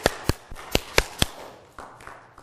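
A quick, irregular run of about five sharp knocks in the first second and a half, then quiet room sound.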